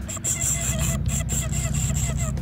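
Low steady rumble of a boat's idling engine. Over it, a spinning fishing reel is cranked, giving a thin high whir with rapid ticking.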